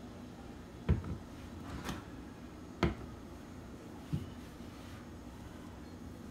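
A few sharp clicks and knocks from handling a metal spoon and a plastic syrup bottle over an aluminium saucepan: three separate clicks, about a second in, near three seconds and just after four seconds.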